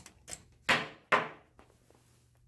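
Steel ball dropping down plastic LEGO slides: a few light clicks, then two loud clattering knocks about a second apart, each dying away quickly.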